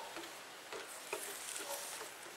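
Faint outdoor ambience with a few soft, scattered ticks.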